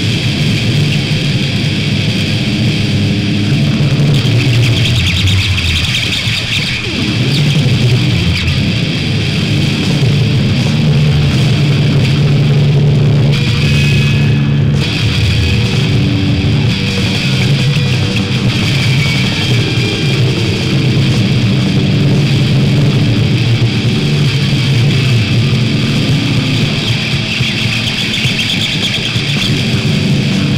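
Hardcore punk recording playing: loud, dense distorted electric guitar with bass and drums, running without a break.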